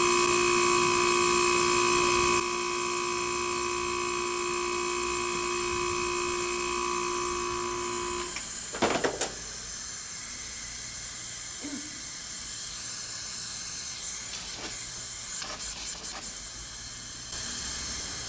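Samsung wall-mount air conditioner outdoor unit running on test: compressor and fan hum with steady tones, and a hiss of refrigerant gas blowing from the open high-pressure service port, a sign that the compressor is pumping normally. About eight seconds in, the running tones stop after a brief clatter, leaving a quieter steady hiss.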